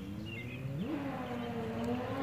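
An engine running in the background, its hum rising in pitch about a second in and then holding steady. A few short bird chirps sound near the start.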